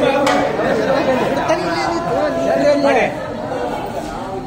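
Several men talking over one another, an indistinct chatter of voices in a large hall.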